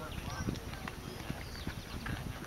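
Faint background voices with scattered light knocks and taps; no single loud event.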